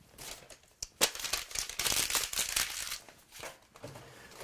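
Folded paper airplanes rustling and crinkling as a hand shuffles through them in a metal tool-chest drawer, loudest from about one to three seconds in.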